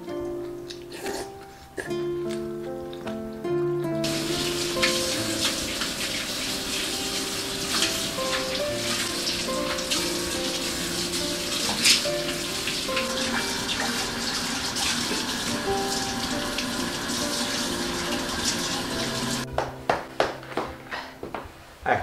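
Kitchen tap running full into the sink while a bowl is washed under it, starting about four seconds in and cutting off shortly before the end, over steady background music.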